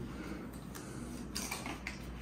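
Faint light clicks and taps of puzzle pieces being handled and pressed into place on a wooden table, a few times.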